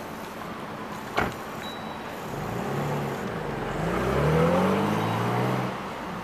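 A car engine accelerating past on the street, its note rising and dipping as it goes, loudest about four seconds in. A single sharp click about a second in.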